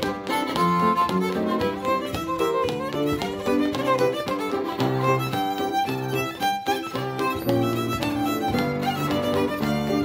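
Fiddle and upright piano playing a lively reel together: the bowed fiddle carries the melody while the piano keeps a steady chordal accompaniment with a pulsing bass line.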